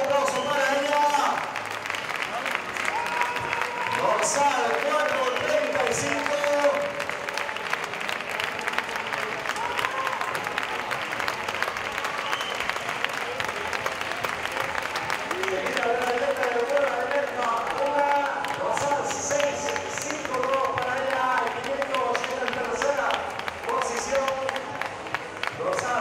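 Spectators clapping for runners on an 800 m finishing straight, with voices talking over the applause. The clapping is heaviest in the first half, and the voices come through more clearly near the end.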